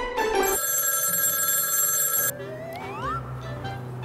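A mobile phone ringtone rings for about two seconds after the tail of a short music jingle, followed by a sound that rises steadily in pitch.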